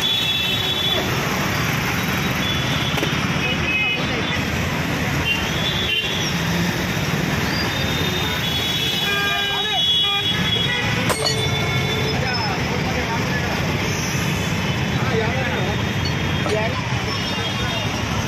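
Busy road traffic with vehicle horns tooting several times over the steady traffic noise, and voices of people standing around.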